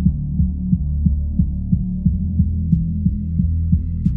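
Synthwave instrumental beat in a sparse passage: a deep sustained synth bass with a soft low pulse about three times a second, and almost nothing in the high range.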